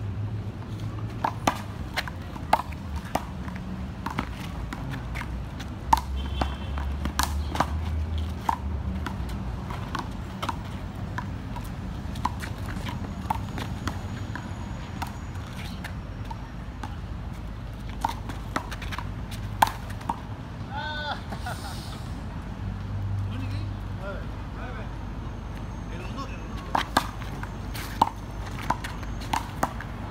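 A small rubber handball being played on an outdoor one-wall court: sharp smacks of palm on ball, ball off the concrete wall and off the ground, coming irregularly about once or twice a second over a steady low city hum.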